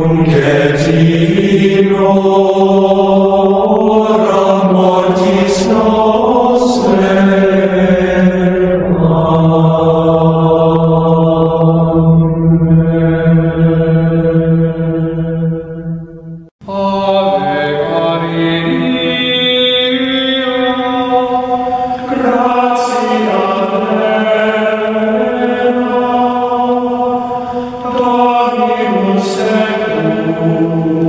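Gregorian chant: voices singing slow, sustained melodic lines. Past the halfway point the singing fades and breaks off for a moment, then a new phrase begins.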